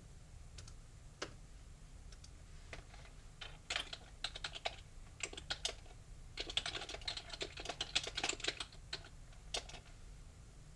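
Typing on a computer keyboard: a few scattered keystrokes at first, then a quick run of keystrokes in the second half as a short message is typed.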